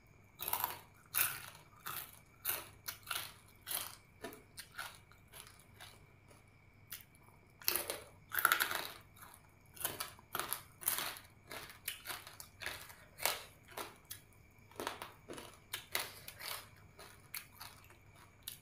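Close-up crunching and chewing of crispy pork rind (kaep mu): a steady run of short crackling bites and chews, about two a second, loudest about halfway through.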